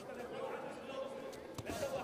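Indistinct voices calling out in a large sports arena, with a few dull thuds of bare feet stamping on judo tatami mats, the loudest near the end.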